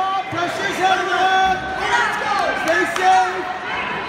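Speech: several voices calling out and talking over one another, one of them shouting "stay safe" near the start.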